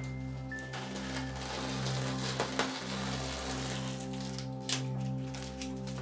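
Background music with long held notes. Over it is a soft crackling rustle, strongest in the middle, of masking tape being peeled off a painted canvas.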